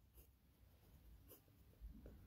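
Faint scratching of a pen writing on notebook paper: a few short, quiet strokes.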